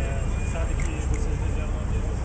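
A man's low, indistinct speech: an interpreter murmuring a translation of the question. Under it runs a steady low background rumble.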